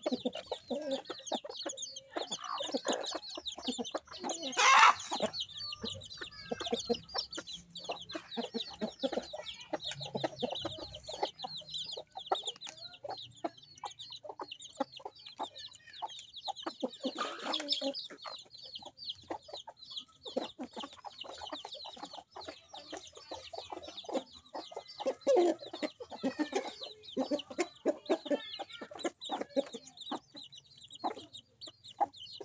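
Chicks peeping rapidly and continuously in high-pitched calls while hens cluck in lower tones around them. Two louder, harsher bursts stand out, about five and about seventeen seconds in.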